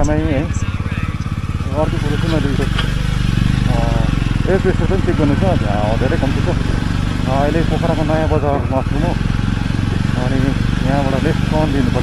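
Jawa 42 motorcycle's single-cylinder engine running steadily at low road speed, a continuous low hum, with a voice talking over it in stretches.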